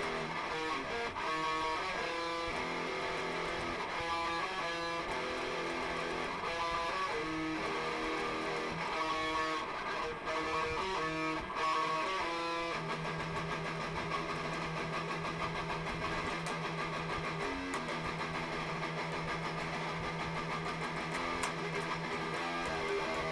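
Electric guitar played freely: short phrases of changing picked notes through the first half, then a low note held ringing for most of the second half, broken briefly once.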